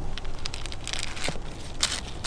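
Black plastic bag around a small plant container crinkling and rustling in irregular bursts as the container is gripped and handled.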